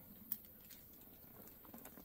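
Faint handling sounds of a brown leather purse being lifted: a few light clicks and soft rustles, the sharpest click about a third of a second in, over a quiet background.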